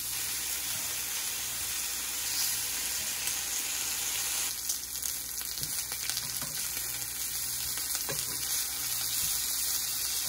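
Thin slices of cured country ham sizzling on a hot griddle pan: a steady high hiss. From about halfway through, light clicks of metal tongs against the pan as the slices are turned.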